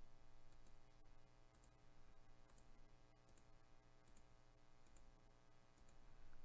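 Near silence with faint computer mouse clicks, about one a second, as the randomizer button is clicked over and over; a low steady hum underneath.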